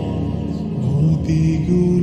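Slow background music in a chant-like vocal style, made of long held notes that step slowly from one pitch to the next.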